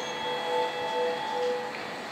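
Station platform chime over the public-address speakers: a short melody of clear bell-like notes alternating between two pitches, ending about two seconds in.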